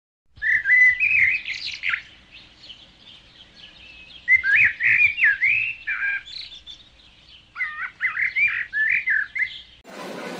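A songbird singing: three short warbled phrases of quick, swooping notes a couple of seconds apart.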